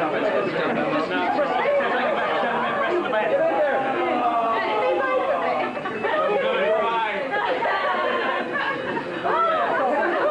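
Several men talking over one another close to the microphone: overlapping chatter with no single clear voice.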